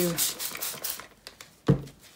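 Trigger spray bottle misting water onto wet wool fibre in several quick squirts in the first second, followed near the end by a single dull thump.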